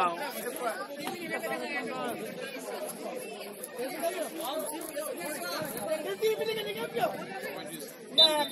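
Several voices talking and calling out over one another, indistinct chatter with no single clear speaker.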